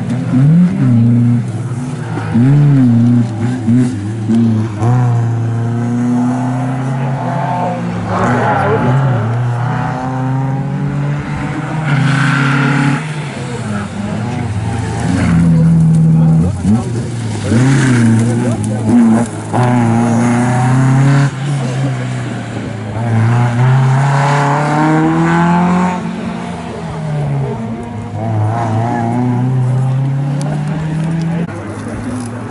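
Classic rally car engines revving hard as the cars pass one after another. The pitch climbs and drops repeatedly with each gear change.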